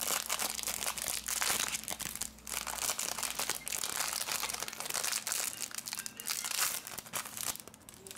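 Thin clear plastic wrapping crinkling in dense, irregular bursts as it is pulled off a replacement lithium-ion phone battery. The crinkling stops shortly before the end.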